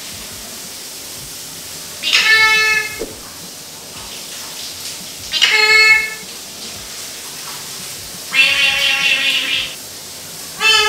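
Male eclectus parrot giving three loud, drawn-out calls a few seconds apart, the third longer and harsher. Between the calls a shower runs steadily.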